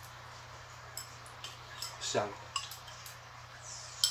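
Chopsticks tapping and scraping against small bowls during eating, in a few light, scattered clicks.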